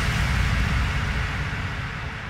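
Synthesized white-noise sweep in an electronic house mix, fading steadily with its treble dying away: a transition effect between sections of the music.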